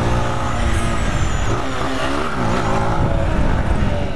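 Honda CG 160 Titan's single-cylinder four-stroke engine running as the motorcycle rides along. The revs dip and then climb again about two seconds in.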